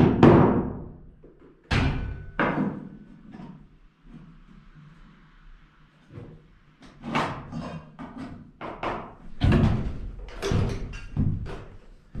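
Irregular sharp knocks and bangs of carpentry work on wooden wall framing: a pair about two seconds in, a quieter stretch, then a denser run of strokes in the second half.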